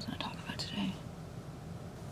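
A faint whispered voice in the first second or so, under her breath.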